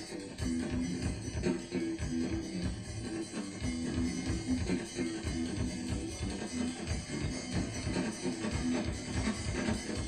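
Punk rock trio playing live: electric guitar, bass and drum kit in a steady rhythmic instrumental passage with no vocals.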